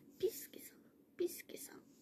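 A young woman whispering a few short syllables under her breath, quietly, in two or three brief bursts.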